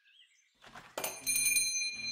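A bell over a shop door rings once as the door is pushed open, a sound effect that starts about a second in and keeps ringing.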